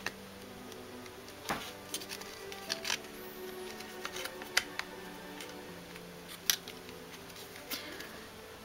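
Sharp plastic clicks and taps, about half a dozen at irregular intervals, as a figure's wing is worked into its back socket and will not seat. Quiet background music with held notes plays throughout.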